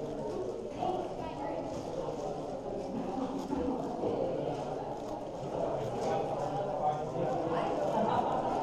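Rapid, irregular clicking and clacking of a magnetic 7x7 speedcube's layers being turned by hand during a timed solve, over a steady murmur of background crowd chatter.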